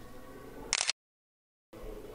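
Faint indoor background noise with a low hum. About three-quarters of a second in, a short high sound is followed by an abrupt cut to dead silence lasting nearly a second, a break in the audio, before the background noise returns.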